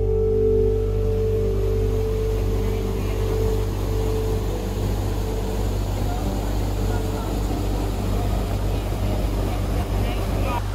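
Water flowing steadily in a creek, an even rushing noise with a steady low hum underneath. Soft piano music dies away in the first two seconds.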